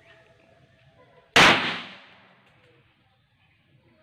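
A single pistol shot about a second and a half in: one sharp crack with a short echo fading after it.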